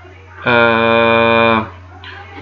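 A man's voice holding one steady, drawn-out hesitation sound, like a long "aah", for about a second, over a faint constant electrical hum.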